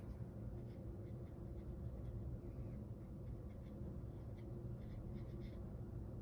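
Faint, light scratches of a flat watercolour brush dabbing and dragging on paper, a few scattered strokes, over a steady low hum.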